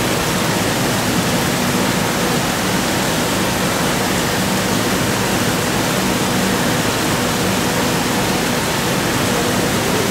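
Steady, even rushing noise with a faint low hum underneath, without breaks or changes.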